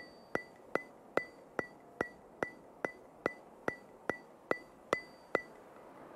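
Ticking sound effect: about fourteen sharp clicks at an even pace of roughly two and a half a second, each with a brief high ring. The ticking stops near the end.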